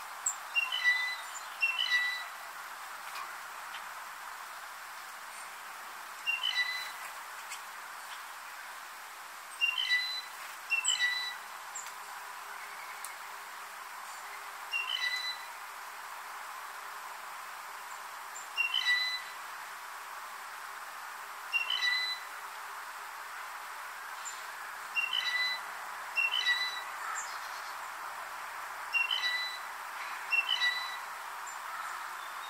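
Blue jay giving its squeaky-gate, or rusty pump-handle, call: short, creaky squeaking phrases repeated every few seconds, sometimes two close together, over a steady background hiss.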